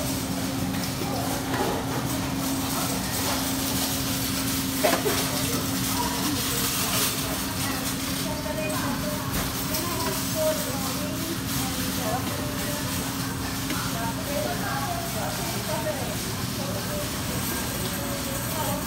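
Food-counter ambience: indistinct background voices over a steady low hum that fades out near the end, with a single sharp click about five seconds in.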